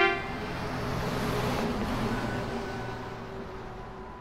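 Cartoon bus sound effect: a rushing engine noise that swells and then fades away as the bus drives off.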